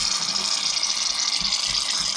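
Aerosol shaving-cream can spraying foam into a tub of slime: one steady, unbroken hiss.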